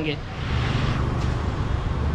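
Street traffic: a road vehicle going past, with a steady low rumble and a hiss that is strongest about half a second to a second in.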